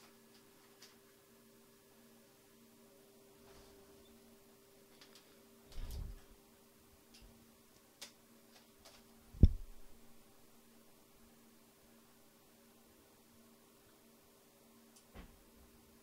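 Faint steady electrical hum in a quiet room, broken by a dull thump about six seconds in and a sharper, louder knock about nine and a half seconds in, with a few faint clicks between.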